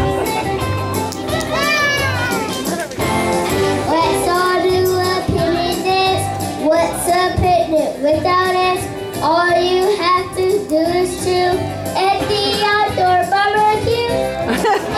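A group of young children singing together, accompanied by music with a steady beat.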